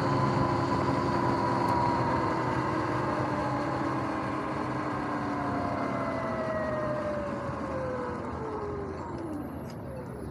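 Sur-Ron X electric dirt bike's motor and drivetrain whine, falling steadily in pitch as the bike slows, dropping away quickly near the end as it comes to a stop, over a steady rush of tyre and wind noise.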